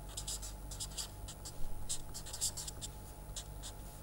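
Felt-tip permanent marker writing on paper: a run of short, quick, scratchy strokes as letters and symbols of an equation are drawn.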